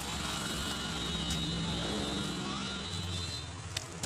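An engine running steadily, its low hum shifting slightly in pitch, with a thin high steady whine above it that fades near the end; a short sharp click sounds just before the end.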